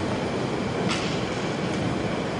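Steady room tone: an even low hum and hiss of background noise, with one faint click about a second in.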